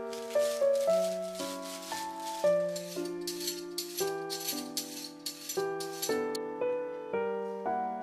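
Gentle background piano music. Over it, for the first six seconds or so, a rhythmic scratchy shaking at about two to three strokes a second, which then stops suddenly.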